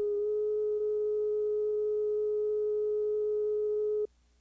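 Line-up test tone that runs with colour bars at the head of a videotape recording: a single steady beep held at one pitch, which starts and cuts off abruptly.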